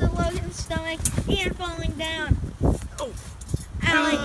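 Boys' voices calling out in short, high-pitched cries, with scattered thuds of bodies landing on a trampoline mat.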